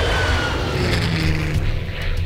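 Aircraft fly-by sound effect: a loud rushing whoosh with a thin whine that slides down in pitch, over a steady low engine drone.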